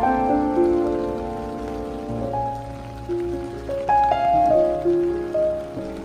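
Solo piano playing a slow, gentle melody of held, fading notes, over the steady hiss of rain falling on pavement.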